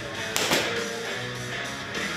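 Guitar background music, with two sharp smacks close together about half a second in: gloved punches landing on focus mitts.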